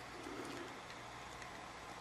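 Quiet room tone during a pause in speech, with a faint low murmur in the first half second.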